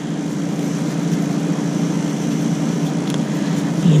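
Steady low hum with an even hiss from room ventilation, such as a fan or air-conditioning unit, running without change.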